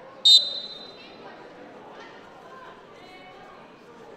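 A sambo referee's whistle gives one short, sharp, high-pitched blast about a quarter second in, ringing briefly in a large hall, signalling the bout to resume. A steady crowd murmur follows.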